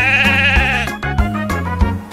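A cartoon sheep bleating once, a single wavering 'baa' lasting just under a second, over bouncy children's music with a steady bass beat.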